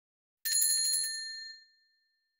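Bell-like 'ding' sound effect in an animated intro: a single strike about half a second in, several clear high tones ringing together and fading over about a second.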